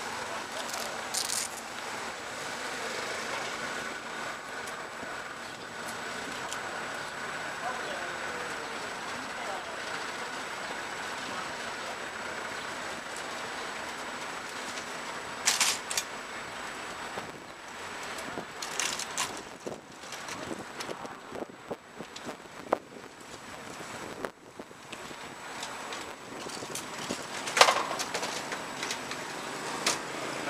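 Street ambience with indistinct voices, broken by several sharp metal clanks from an ambulance stretcher being wheeled and loaded. The loudest clank comes a little before the end.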